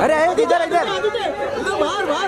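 Several men's voices calling out and talking over each other, photographers urging someone to stop and turn for pictures.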